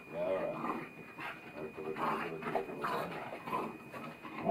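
Pet hounds vocalizing in a string of short whines whose pitch bends up and down.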